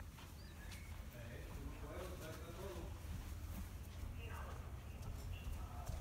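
Faint, distant voices talking over a steady low rumble, with a few soft clicks and knocks.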